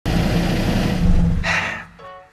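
A car engine idling, a loud steady rumble with hiss, with a brief rush of higher noise about one and a half seconds in before it fades out.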